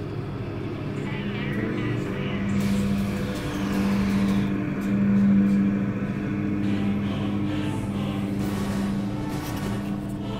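Cinematic soundtrack of a basketball mixtape intro playing through speakers: a steady low droning hum with a falling whoosh about three seconds in.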